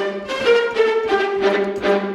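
Sampled viola section (Cinematic Studio Strings library) playing measured tremolo, the rapid bow strokes locked to the host tempo. A steady low note is held under a short upper line that changes note about every half second.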